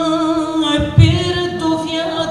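A woman singing unaccompanied, holding long notes with vibrato. A dull thump about halfway through is the loudest moment.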